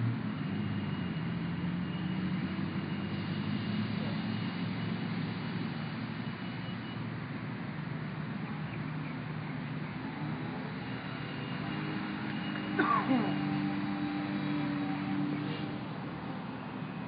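A vehicle engine running steadily, with outdoor street noise. About thirteen seconds in, a short high sound glides quickly downward.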